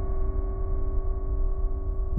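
Ambient synthesizer drone: several steady tones held together over a deep, low rumble, with no change in pitch or rhythm.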